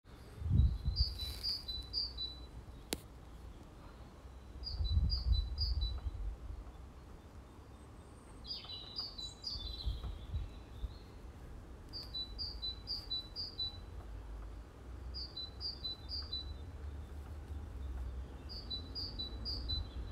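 Small songbirds singing: one repeats short phrases of three or four high notes every few seconds, and a different, busier call comes once near the middle. A low rumble runs underneath, swelling briefly about a second in and again around five seconds.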